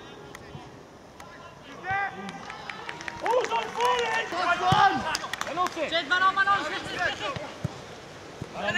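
Several men's voices shouting over one another during a football match, starting about two seconds in and carrying on until just before the end, with a few short sharp knocks among them.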